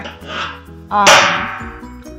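Metal satellite dish giving a single loud clang that rings on and fades over about a second.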